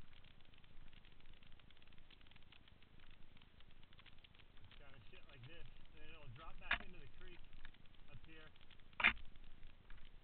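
Mountain bike rolling down a dirt singletrack: a constant faint crackle and rattle of tyres on dirt and brush, with two sharp knocks, about two-thirds through and near the end, the second the louder. A faint wavering voice is heard in the middle.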